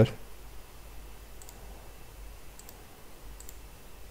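A few faint computer-mouse button clicks, about a second apart, over a low steady hum.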